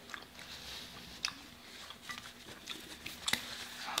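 Faint chewing and mouth sounds of eating, with a few soft sharp clicks, the sharpest a little after three seconds in.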